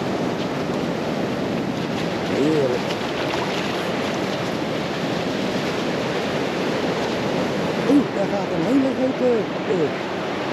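Steady rush of ocean surf mixed with wind on the microphone, with a voice heard briefly near the end.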